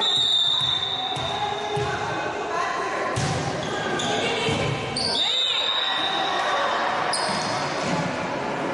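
Volleyball being played in an echoing gym: the ball is hit several times with sharp smacks, and players call out. Two long high-pitched tones stand out, one at the start and one about five seconds in.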